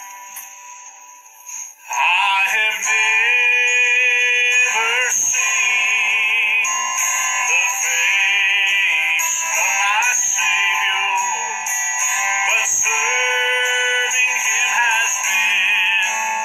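A man singing a slow solo song, his voice coming in about two seconds in over a quieter guitar accompaniment and continuing with a held vibrato.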